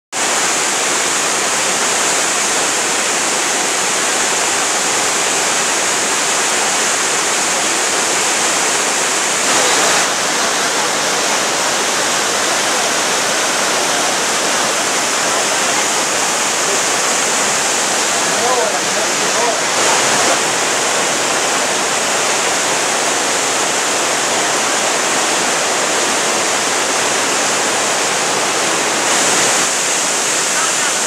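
Waterfall: a loud, steady rush of whitewater pouring over rock ledges.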